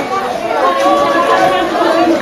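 Several people talking at once, overlapping voices in casual chatter.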